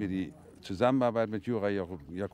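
Speech only: a man's voice starts speaking about a second in, after a short lull.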